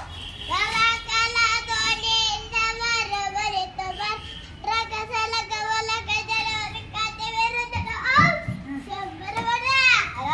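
A young boy singing a line of Kannada folk-drama (bayalata) song unaccompanied, in two long phrases on held notes, the second starting after a short break about four and a half seconds in. Shorter rising and falling vocal calls follow near the end.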